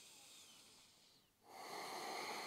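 A woman's audible breathing, held in a deep forward fold: a faint soft breath near the start, then a longer, louder breath beginning about a second and a half in.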